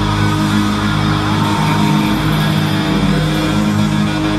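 Live band music in an arena, heard from the audience seats, with guitar prominent over steady sustained chords.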